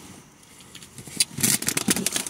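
A packaging bag crinkling and rustling as it is handled. It starts about a second in as a quick run of irregular crackles.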